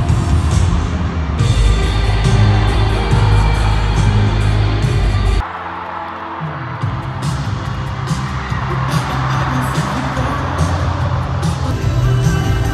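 Loud amplified pop music with singing at a stadium concert, with crowd noise mixed in. The sound cuts abruptly to a different, slightly quieter passage about five and a half seconds in.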